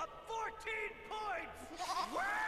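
A cartoon sheep bleating in three or four short calls from an animated show's soundtrack.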